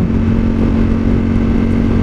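Ducati Streetfighter V4 motorcycle's V4 engine running at a steady cruise, its note holding one pitch, heard from the rider's seat under wind and road noise.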